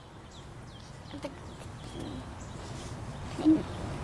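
Wild birds singing in the background: scattered faint, short high chirps. A few soft low sounds come between them, the loudest about three and a half seconds in.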